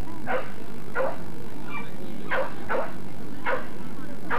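A boxer dog barking, about five short barks at irregular intervals.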